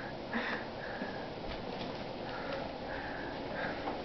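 Soft, repeated sniffing breaths close to the microphone, roughly two a second.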